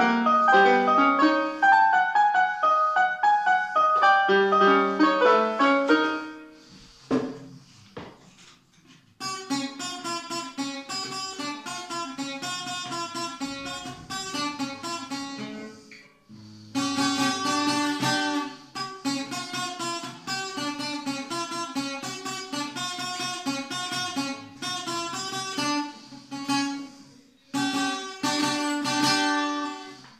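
Electronic keyboard playing a melody in a piano voice for about six seconds, then a short pause, then an acoustic guitar played in steady rhythmic chords, with brief breaks between phrases.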